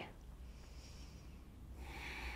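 Faint, soft breathing of a woman holding a seated yoga twist: a light breath about half a second in, and a longer, slightly louder one starting near the end, over a low steady room hum.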